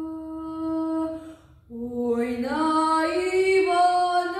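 A teenage girl singing a Ukrainian folk song solo and unaccompanied: a long held note ends about a second and a half in, a short breath, then a new phrase that climbs in pitch.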